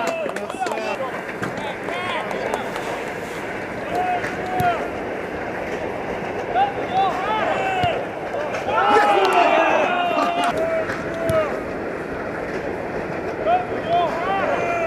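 Players shouting short calls to each other across an outdoor football pitch during open play, with a denser burst of shouting about nine seconds in.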